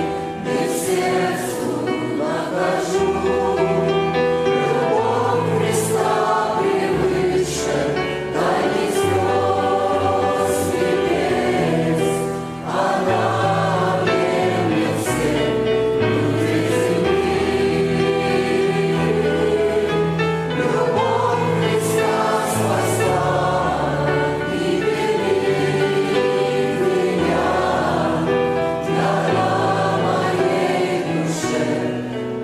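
A church choir singing a Christian hymn in harmony, accompanied by a grand piano, continuous throughout with a brief dip between phrases about halfway.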